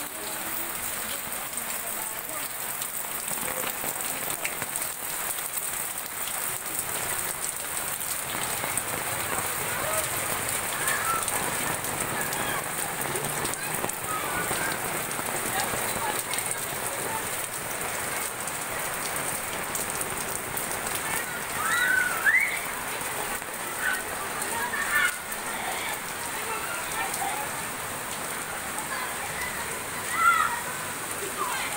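Steady rain falling on pavement and roofs, a continuous even hiss and patter. A couple of brief high-pitched voice cries rise over it about two-thirds of the way through.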